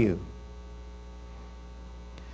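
Steady electrical mains hum, low-pitched with fainter higher overtones, left audible in a pause after the last word of speech ends just at the start.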